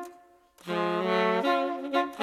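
Jazz front line of trumpet and saxophone playing a slow held chord in unison. The chord fades out, and after a half-second break a new one enters and is held, moving to a new chord near the end.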